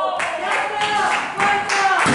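Referee's hand slapping the canvas of a wrestling ring in a pinfall count.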